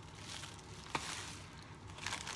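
Faint rustling of a shiny pink padded mailer being handled and opened, with one small click about a second in.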